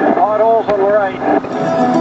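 A voice sings a short phrase with smoothly sliding, arching pitch over background music, lasting about a second. The music's steady chord comes back near the end.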